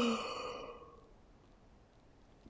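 A woman yawning: the voiced end of the yawn trails into a long breathy exhale that fades out within about a second.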